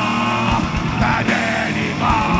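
Live heavy metal band playing: distorted electric guitars and pounding drums under several voices singing long held notes together.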